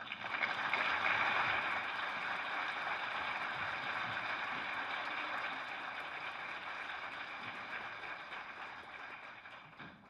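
Audience applauding, starting suddenly, loudest in the first couple of seconds and slowly dying away toward the end.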